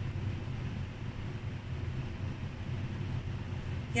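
Steady low background hum with a faint even hiss; no distinct event stands out.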